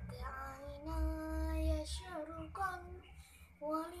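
A young girl singing a sholawat, an Arabic devotional song in praise of the Prophet, unaccompanied. Her phrase has sliding, ornamented notes and one long held note about a second in.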